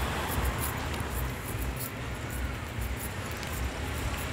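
Roadside outdoor ambience: a steady low rumble of wind and road noise with faint, irregular ticks.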